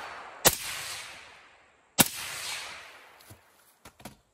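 Two shots from an 11.5-inch AR-15 pistol, about a second and a half apart, each with a short echo tail dying away over about a second. A couple of faint clicks follow near the end.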